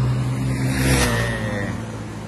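A motor vehicle passing on the road close by. Its engine drone falls in pitch and fades as it moves away.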